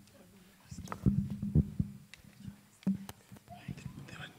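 Handheld microphones being passed from hand to hand and handled, giving a string of dull knocks and thumps through the sound system, loudest between about one and two seconds in.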